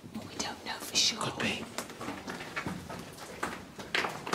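People whispering, with sharp hissing consonants loudest about a second in.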